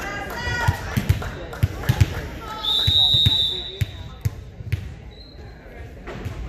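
A volleyball thuds repeatedly on a gym floor, about every half second, as it is bounced before a serve. Midway through, a referee's whistle gives one long blast to signal the serve, followed by a short second peep near the end.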